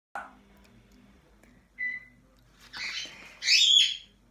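High bird-like chirps and whistles: a short steady whistle just before halfway, then a louder burst of bending chirps near the end.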